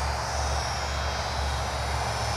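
Flyzone Nieuport 17 micro electric RC biplane's motor and propeller running steadily in flight, a faint high whine over a steady low rumble.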